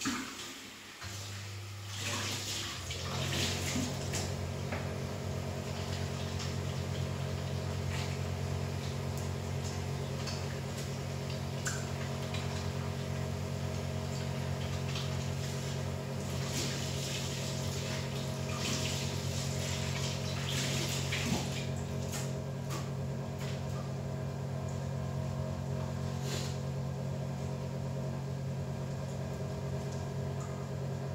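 A kitchen tap turned on about a second in and left running steadily while hands are washed under it, a rush of water over a low steady hum.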